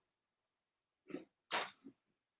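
After a second of near silence, a brief breathy sound from a person, like a quick breath or sniff, about one and a half seconds in, with a smaller one just before and just after.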